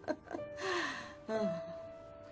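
A woman's breathy laugh or gasp, fading into a short falling vocal sound, over soft background music holding a steady note.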